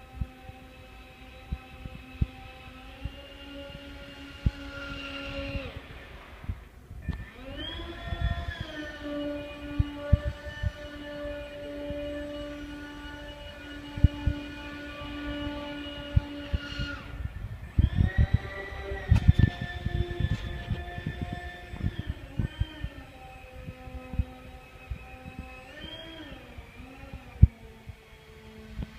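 Model hovercraft's fan motors whining steadily. The pitch climbs sharply about seven seconds in as the motors speed up, drops back around seventeen seconds, rises again, and wavers up and down near the end. Scattered light knocks sound throughout.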